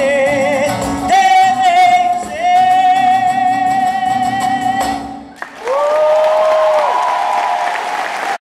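A woman singing long held notes with vibrato, with guitar accompaniment. About five seconds in the accompaniment stops, and a final held note rises in over audience applause.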